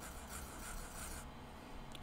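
Felt-tip art marker rubbing on sketchbook paper in a few short colouring strokes, a faint scratchy hiss.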